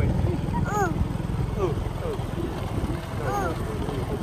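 Motor scooter engine running steadily while the scooter is ridden, a low rumble throughout. Many short rising-and-falling calls or voices sound over it.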